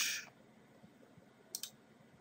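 A short hiss at the very start, then quiet room tone broken by a quick double click about one and a half seconds in.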